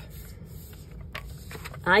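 Paper and card stock being handled and slid across a work mat: soft scraping and rustling, with a faint tick about a second in.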